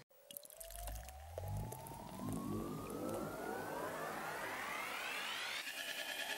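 Beer pouring into a tall glass: a few low glugs, then a tone that rises steadily in pitch as the glass fills. Electronic music starts near the end.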